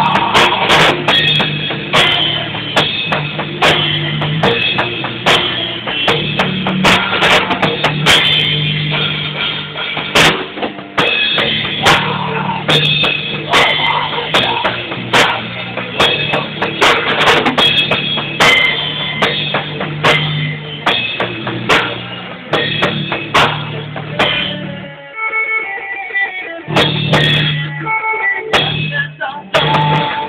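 A rock band playing a song in practice: guitar over a drum kit beating a steady rhythm. About 25 seconds in, the drums and low notes drop out for a couple of seconds, then the full band comes back in.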